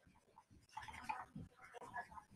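Faint scratchy rubbing of quick erasing strokes across a surface, starting about 0.7 seconds in.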